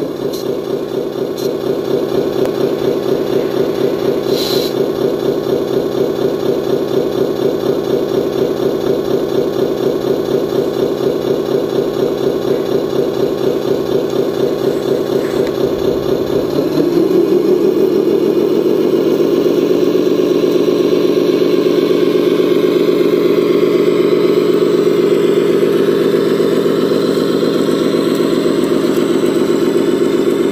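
Diesel truck engine sound from an RC truck's sound unit, idling steadily with a fast, even beat, then revving up at about the middle and holding at a higher speed to the end.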